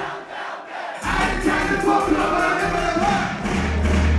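Live hip-hop concert: music with heavy bass through the PA and a crowd shouting and singing along. The bass drops out for about a second and then comes back in. A steady low drone begins just before the end.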